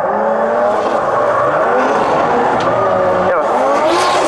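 Two drift cars sliding in close tandem, weaving left and right, with tyres squealing and skidding. Their engines rise and fall in pitch as the throttle comes on and off.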